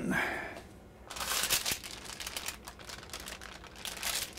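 Parchment paper crinkling and a cane banneton basket rustling against it as a round loaf of proofed bread dough is turned out of the basket onto a parchment-lined baking sheet. There is irregular crackling from about a second in.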